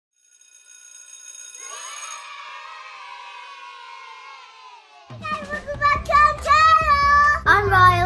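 Channel intro jingle: a high twinkle and a long tone sliding slowly downward. Then, from about five seconds in, high children's voices chant the channel name over music with a bass beat.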